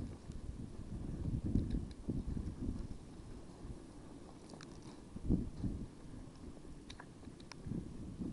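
Footsteps crunching and rustling through dry leaf litter at a brisk pace, with low rumbling thuds and wind buffeting on a head-mounted camera's microphone. A few faint sharp clicks sound in the background.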